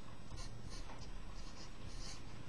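Marker pen writing on a paper sheet in a run of short scratchy strokes, forming letters.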